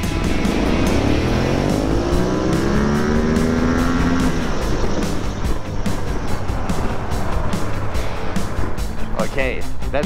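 Yamaha Ténéré 700 motorcycle's parallel-twin engine, fitted with a remapped ECU and free-flowing air filter power kit, accelerating hard in second gear from a standing launch, its revs climbing for about four seconds before easing off.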